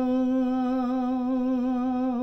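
A man's voice holding one long sung note of a Gojri bait, steady in pitch with a slight waver.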